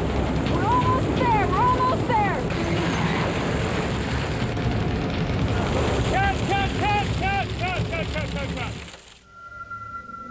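Loud, steady rush of film-set wind machines blowing debris, with high cries rising and falling over it twice. The rush cuts off about nine seconds in, leaving a single held music tone.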